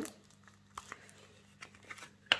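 Faint crinkling of packaging being handled: a few soft crinkles, one about a second in and two near the end.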